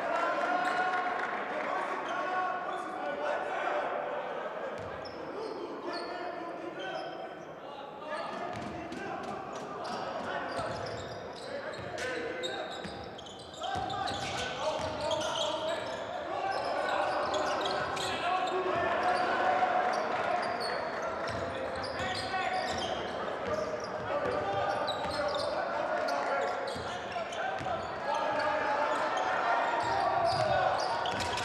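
Basketball game sounds in a large hall: the ball bouncing on the hardwood court with many short knocks, over a steady mix of crowd and player voices.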